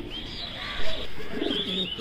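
Caged fancy pigeons cooing, with thin, high chirps from birds in between.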